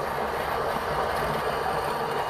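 Niche Zero conical-burr coffee grinder running, grinding espresso beans with a steady crunching whir.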